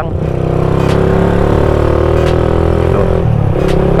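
Motorcycle engine running under way as heard from the rider's seat, its note climbing gently and then easing off about three seconds in.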